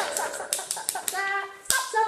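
A sheet of printer paper shaken quickly, rattling in a string of crisp clicks, with women's voices calling out over it in the second half.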